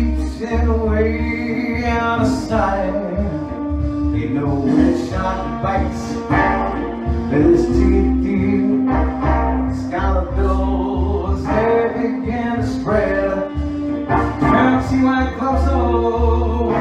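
A man singing into a handheld microphone over an instrumental backing track with a steady bass pulse.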